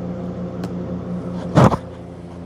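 Steady electrical hum from running reef-aquarium equipment, with one short, loud knock about a second and a half in.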